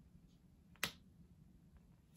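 A single sharp click a little under a second in, otherwise near silence.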